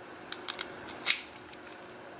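Key being worked in a small stainless-steel Knog padlock: a few light metallic clicks, the loudest about a second in.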